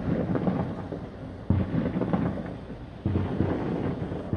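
Distant New Year's fireworks: a continuous rumbling din of bangs and crackle, with two heavier booms about one and a half and three seconds in, each rolling away like thunder.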